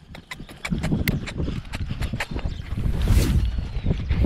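Ridden horse's hoofbeats at a fast gait over grass and dirt, a run of sharp clicks and thuds, with a low rumble of wind on the microphone growing louder near the end.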